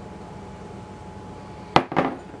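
Glass measuring cup set down on a tiled countertop: a sharp glassy clink near the end, followed at once by a second, softer knock. Before it there is only quiet room tone with a faint steady hum.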